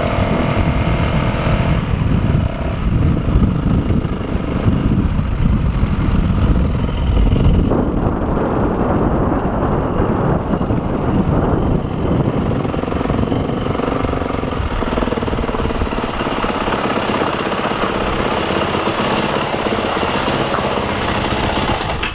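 Yamaha 250 dirt bike engine running as the bike is ridden, the revs rising and falling, with rumbling wind noise on the onboard microphone. From about two-thirds of the way in, it settles to a lower, steadier note as the bike slows and pulls up.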